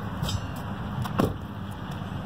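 Steady rumble of highway traffic, with one brief, sharper sound about a second in.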